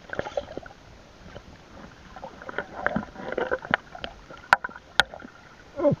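Muffled underwater sound from a camera submerged in a river: water movement with scattered clicks and knocks, including two sharp clicks about four and a half and five seconds in. A brief hum-like voice sound begins at the very end.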